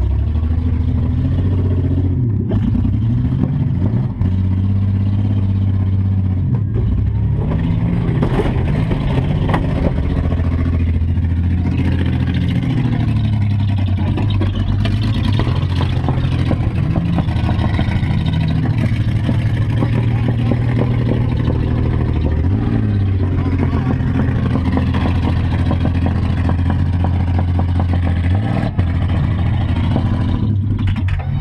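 Demolition derby van's engine heard from inside its gutted cabin, running loud throughout and revving up and down as it drives around the arena.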